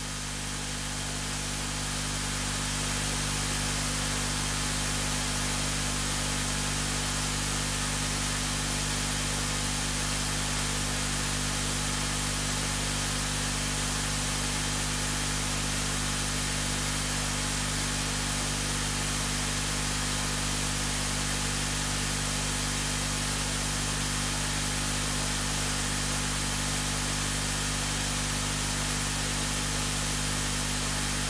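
Steady hiss with a low hum underneath, swelling over the first few seconds and then holding even.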